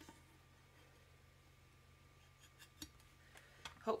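Quiet handling sounds of a rotary cutter being run through layered fabric on a tumbler, with a few faint clicks and taps in the second half as the cutter is put down.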